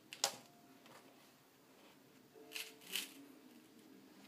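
Crocs foam clogs scuffing and clicking as a cat chews and rubs against them on a tile floor: one sharp click about a quarter second in and two more close together near the end.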